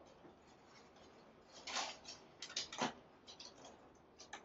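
Long New Zealand flax leaves being handled and bent into loops, giving a few soft, crisp rustles and clicks, the loudest two about halfway through and a little later.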